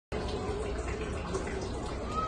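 Steady rushing background noise with a low rumble, even throughout.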